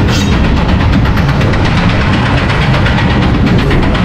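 Riding in a spinning roller coaster car: a loud, steady rumble and rush of the wheels running along the steel track, with a rapid, even clatter running through it. It cuts off suddenly at the end.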